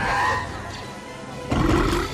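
Film soundtrack of the Sarlacc, the creature in the sand pit, giving a loud guttural roar about one and a half seconds in, over orchestral score.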